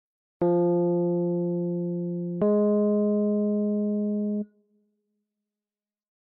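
Two piano notes played one after the other as an ear-training interval, the second a minor third above the first. Each note is held about two seconds, fading slightly, and the sound stops cleanly after the second.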